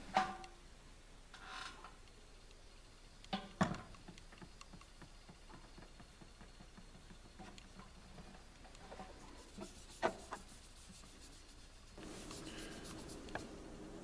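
Faint rubbing of a cloth working carnauba wax onto a flat 1095 carbon-steel knife blank on a tabletop, with a few light clicks of the blank being handled, the sharpest about three and a half seconds in and another about ten seconds in.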